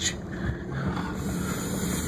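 Vehicle engine and tyre noise heard from inside the cab, running steadily as it drives slowly along a sandy dirt trail.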